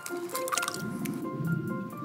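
Eggs cracked into a glass bowl over light background music: a sharp crack of shell about half a second in, then the wet squish of the eggs dropping in.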